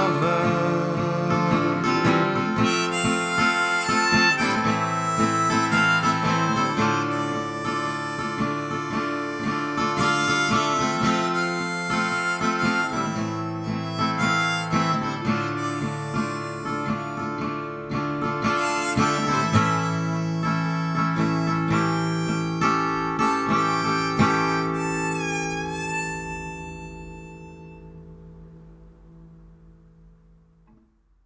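Harmonica played over strummed acoustic guitar in a folk song's instrumental ending. Near the end a harmonica note bends, and the last chord rings out and fades away.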